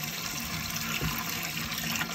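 Water pouring steadily from a plastic bucket into a glass aquarium that already holds water, a continuous splashing pour.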